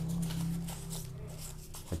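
Small folded paper slips being shaken together, an irregular papery rustle, over a low steady hum.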